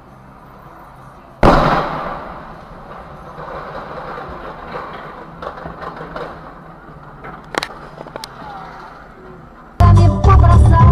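A sudden loud crash about one and a half seconds in, trailing into noise that fades away over several seconds, heard through a dashcam microphone; two sharp clicks follow, and music cuts in at the very end.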